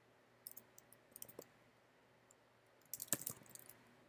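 Computer keyboard keys clicking faintly in short bursts of typing, with the loudest burst of keystrokes about three seconds in.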